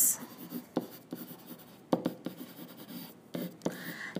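Handwriting strokes: faint scratching of a pen or stylus tip across the writing surface, with several light sharp taps as the letters are put down.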